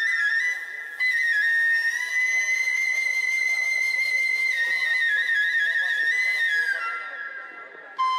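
Background music: a flute playing a slow melody of long held notes, fading out near the end.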